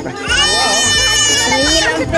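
A high-pitched voice holding one long note for about a second and a half, with a slight waver, over a busier background.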